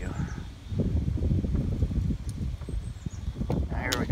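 Wind buffeting the microphone: an irregular low rumble that comes and goes, with no steady pitch.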